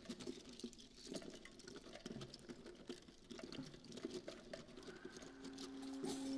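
Free-jazz quartet playing very quietly with extended techniques: a sparse scatter of soft clicks and taps, with low pitched pops among them. Near the end a low held note comes in.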